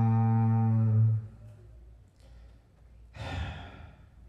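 A low, steady held note that cuts off about a second in, followed by a short breathy burst of noise a little after three seconds.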